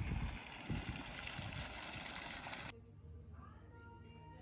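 Wind buffeting the microphone in low thumps over a steady outdoor rush. About two-thirds of the way through it cuts off suddenly to a much quieter room with faint music.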